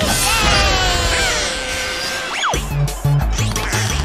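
Cartoon soundtrack: a crash at the start, then music with the beat dropped out, a quick falling whistle about two and a half seconds in, and the music's beat coming back in.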